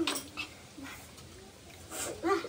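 A brief voiced, whine-like sound cut off at the very start, then faint clicks and soft sounds of people eating noodles with chopsticks and dishes.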